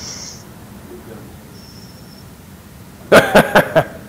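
Quiet room tone for about three seconds, then a short burst of loud laughter near the end.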